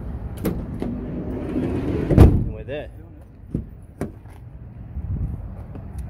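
A van's sliding side door rolling along its track and slamming shut with one loud bang about two seconds in, followed by a couple of light clicks.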